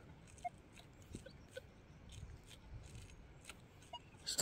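Near silence: faint outdoor background with a few scattered faint ticks.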